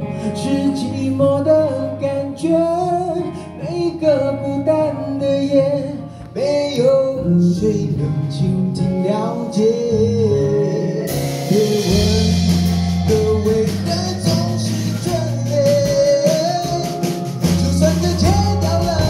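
Live band playing a Mandopop ballad: a male vocalist sings the melody over acoustic guitar, guitar and keyboard. About eleven seconds in, the accompaniment turns fuller and brighter, with a rhythmic tapping on top.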